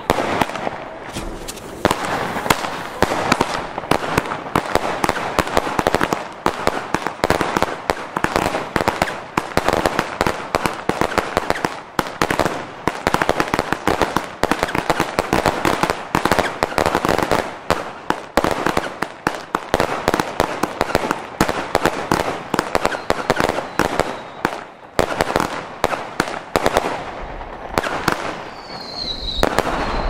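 Fifteen Lesli Gold firework batteries going off at once: a dense, continuous barrage of launch thumps and crackling golden-star bursts that thins out in the last few seconds. A short, high, falling whistle sounds near the end.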